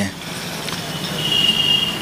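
Road traffic noise from a street, a steady rush of passing vehicles, with a thin, high steady tone in the second half.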